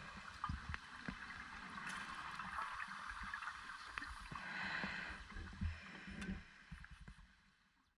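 Underwater sound of scuba diving: gurgling bursts of a diver's exhaled regulator bubbles over low rumble and scattered clicks, fading out near the end.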